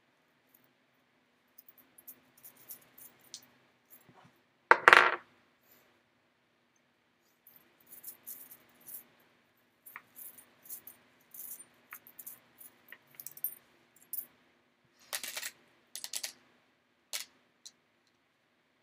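Small metal divination charms clinking and clattering as they are drawn and dropped, with one loud clatter about five seconds in and a scatter of light clinks through the second half.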